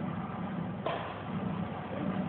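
Steady low background rumble with a single sharp knock about a second in.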